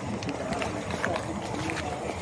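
Indistinct chatter of people talking in the background, with a few light footsteps on paved ground.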